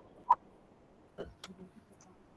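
A few faint, sharp clicks just after a second in, as from a computer being worked, over quiet room tone, with one short blip about a third of a second in.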